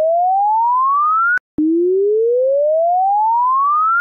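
Samsung hidden diagnostic menu (*#0*#) receiver test tone: a pure electronic tone sweeping steadily upward in pitch. It cuts off with a click about a second and a half in, and after a brief gap a second identical rising sweep follows. It is the earpiece receiver test, played to check that the phone's audio works without dropping out.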